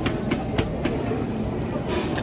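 Restaurant background noise: a steady low rumble with a few sharp clicks.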